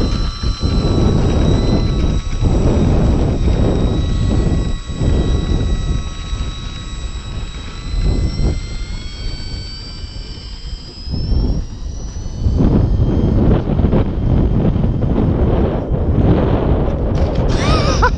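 Gusting wind buffeting the microphone, with the thin high whine of a small RC auto-gyro's motor and propeller running underneath. The whine climbs in pitch about eight seconds in as the motor speeds up.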